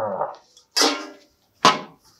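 A metal spoon and a stainless steel bowl clattering twice, about a second apart, each sound sharp and quickly dying away. Before them comes the end of a deep, growled "urgh".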